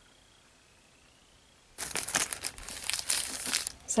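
Near silence for almost two seconds, then a plastic mailer bag crinkling loudly as it is handled.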